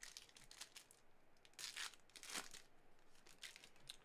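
Faint tearing and crinkling of a foil trading-card pack wrapper as it is ripped open, with two louder rips about one and a half and two and a quarter seconds in among light crackles.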